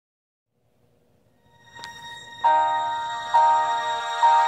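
Instrumental intro of a ballad, on keyboard: after about a second and a half of silence the music fades in, then sustained chords are struck twice, about a second apart, each dying away slowly.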